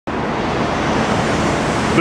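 A steady, loud rushing noise, even across all pitches, that cuts off suddenly at the end.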